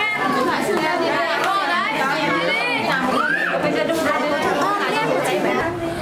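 Chatter of many overlapping voices, small children and adults, in a crowded room.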